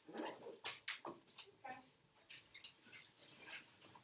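Faint, scattered short rustles and scratches of a quiet classroom during written work: pencils on paper and paper handling, with low murmuring.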